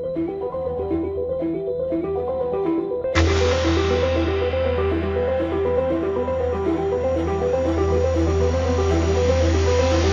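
Software-synth music from Steinberg Padshop 2: an arpeggiated pad plays a quick repeating note pattern that adds rhythm. About three seconds in, a deep, dense bass layer with a wide wash above it comes in suddenly and fills out the sound.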